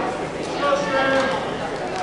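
Voices calling out in a large gymnasium hall, with one drawn-out shout held for about a second.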